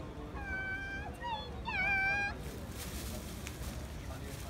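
Two drawn-out meows, one after the other: the first held level then dipping, the second rising then falling away.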